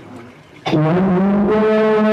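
A male qari's voice in melodic Qur'an recitation (tilawah), amplified through a handheld microphone: about two-thirds of a second in it enters with a short upward glide and settles into one long, steady held note.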